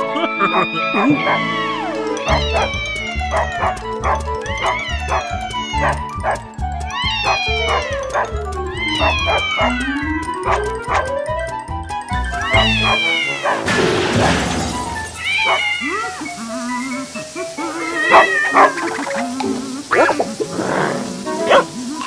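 Cartoon soundtrack: upbeat music with a steady beat and many sliding, whistle-like notes for about the first twelve seconds. After that the beat stops and short cartoon vocal noises and sound effects follow.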